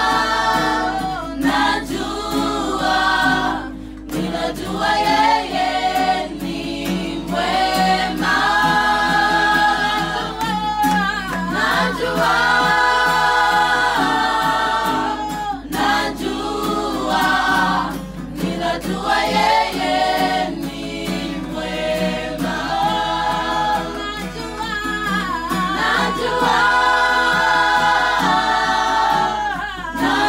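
A group of women singing a cappella in several-part harmony, in sung phrases with short breaths between them.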